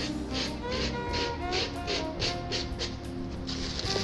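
Background music with held tones and a steady beat of about three strokes a second.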